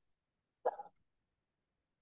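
A single short vocal sound from a person, about a quarter second long, a little over half a second in; otherwise silence.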